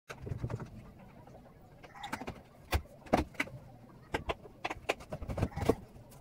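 A series of irregular knocks and clacks, a few every second, from the handling of a wooden cabinet and the things around it.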